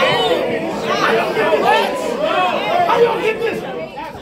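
Speech only: a man rapping a battle-rap verse a cappella, with other voices chattering in a large room.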